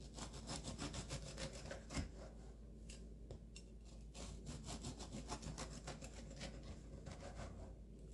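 Serrated knife sawing back and forth through a once-baked biscotti log: faint, quick strokes one after another, with a small knock about two seconds in.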